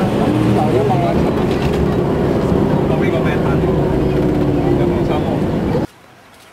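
Loud, steady rumble of a vehicle on the move with a long held drone, and people's voices over it. It cuts off abruptly near the end.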